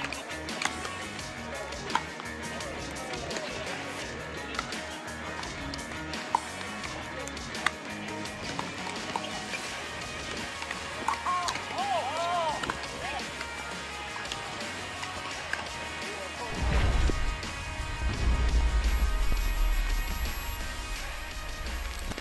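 Sharp pops of pickleball paddles striking the ball, a few seconds apart, over background music and distant voices. Near the end, louder music with heavy bass comes in.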